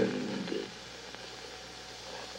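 Steady low hiss with a faint hum, the background noise of an old recording, after a man's word trails off at the very start.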